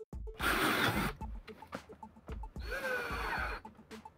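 Cordless drill boring pilot holes into a plywood backboard in two runs of about a second each, the second with a motor whine that bends in pitch. Background music with a steady beat runs underneath.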